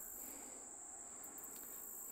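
Faint, steady high-pitched chorus of insects, a continuous drone with no breaks.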